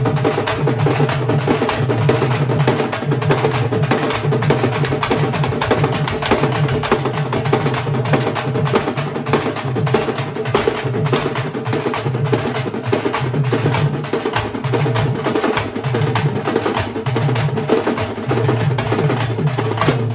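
An ensemble of stick-beaten drums (a large double-headed drum, a barrel drum and small snare-like drums) playing a fast, dense rhythm together without pause.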